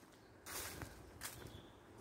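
Faint footsteps on a leaf-covered woodland path. They start about half a second in, with a few soft steps.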